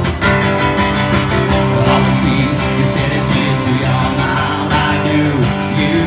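Strummed acoustic guitar playing the instrumental intro of a rock song, in a steady, even rhythm.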